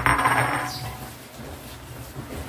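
A sudden metallic clatter that jingles and rings, fading away within about a second.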